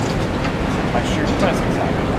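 Steady low rumble of city street noise with the murmur of a waiting crowd's chatter underneath.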